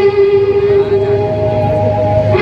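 Live stage music over a sound system, with long held notes. One note ends about half a second in, and a higher one starts about a second in and is held.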